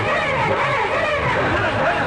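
A group of women's voices calling out together, their pitch gliding up and down, over the song's low steady beat.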